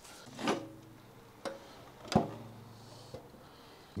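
Four separate clunks and knocks, the loudest a little after two seconds in, over a faint low hum: the fuel tank of a 1990 Kawasaki ZXR-750 being unfastened and lifted off the frame.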